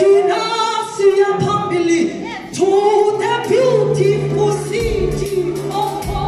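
A gospel choir singing, led by a woman soloist on a microphone. A low, steady bass note comes in about halfway through.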